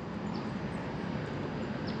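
Steady outdoor background noise with no engine running, and two faint short high chirps, one about half a second in and one near the end.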